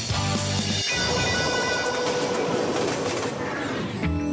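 Background music: a groove with a strong bass line breaks off about a second in into a sustained swelling wash with a held note, and the beat comes back at the very end.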